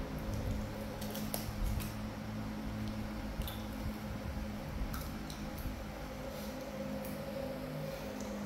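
Monkeys tearing at and chewing fresh lotus seed pods: scattered soft squishing and little crunchy clicks, over a steady low hum.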